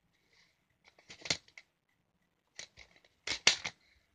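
Plastic DVD cases being handled: short clusters of sharp clicks and clacks, about a second in and again twice near the end, as a case is snapped shut and another picked up.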